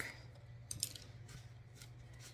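Faint clicks and light rustles of craft pieces being handled and set down, over a low steady hum.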